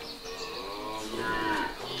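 A dairy cow mooing: one long call that rises slightly in pitch and falls away near the end.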